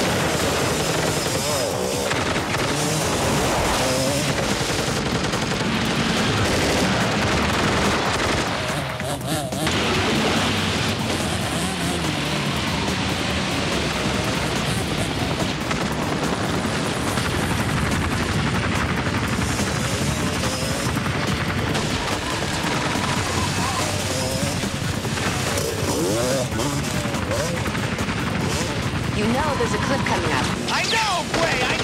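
Action-film soundtrack: automatic gunfire mixed with a music score.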